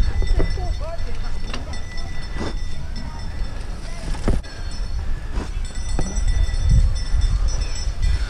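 Bicycle ridden fast over bumpy grass: a steady rumble of wind and ground noise with sharp knocks and rattles from the bike every second or so. A short laugh comes near the start.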